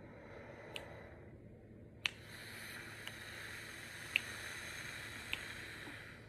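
A woman's controlled breathing: a faint slow inhale for about two seconds, then a steady, even exhale blown out through pursed lips for about four seconds, paced to a counted beat. A few small mouth clicks come through.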